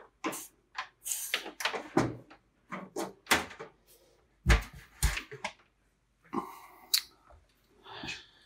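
Irregular small clicks and knocks of bench handling: a soldering iron wiped on a wet sponge and set back in its metal stand while a freshly soldered wire terminal is handled, with two duller thumps about halfway through.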